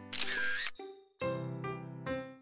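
Cartoon camera-snapshot sound effect, a short noisy burst at the start, followed about a second in by background music with held notes.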